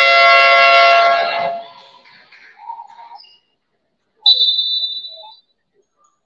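A basketball arena's game buzzer sounds for about a second and a half, apparently ending the time-out. About four seconds in, a referee's whistle gives one short blast.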